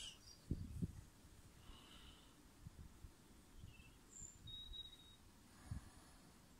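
Near silence outdoors: a few faint low bumps from handling of the camera and telescope, and a few brief, faint high chirps.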